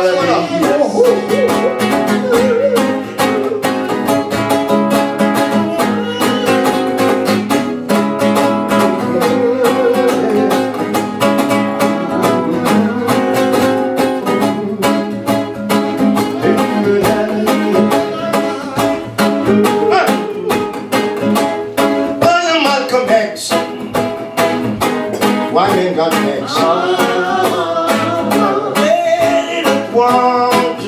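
Two acoustic guitars strumming a reggae rhythm in an instrumental passage of an unplugged reggae performance. From about two-thirds of the way in, voices come in over the guitars.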